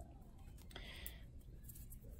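Very quiet: a faint rustle of stretchy nylon knit fabric being pulled hard by hand to load a serged seam, with one small click under a second in, over a low steady room hum.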